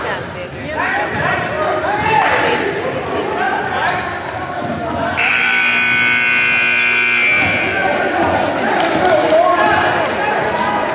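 Gym scoreboard buzzer sounding one steady tone for about two seconds, midway through: the end-of-period buzzer, with the game clock at zero.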